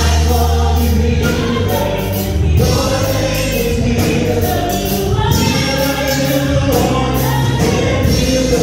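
Gospel vocal group of men and women singing in harmony into microphones, with held, gliding notes over a bass line and a steady beat.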